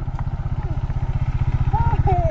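Motorcycle engine idling with a steady, rapid, even beat.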